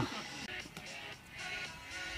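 Quiet background music with steady held notes.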